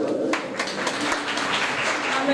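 A room of people applauding, a dense patter of many hands clapping that picks up about a third of a second in.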